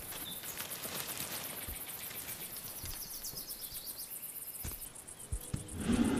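Outdoor ambience of insects chirring in a fast, even, high-pitched pulse, with a few short chirps over it. The chirring fades out near the end, where a few low knocks are heard.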